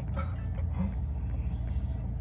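Steady low rumble of a car's cabin, with faint mouth sounds of a person chewing and biting into a burger.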